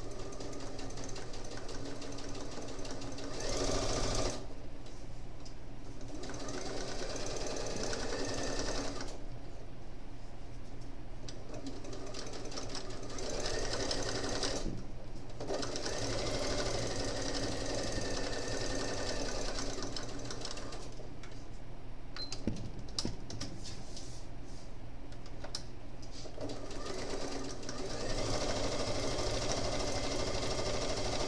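Electric sewing machine stitching in runs, with short pauses every few seconds as the fabric is guided through.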